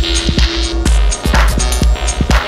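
Electronic dance music from a live DJ mix in NI Traktor, with a deep throbbing bass and regular sharp percussive hits; a held tone drops out a little under halfway through.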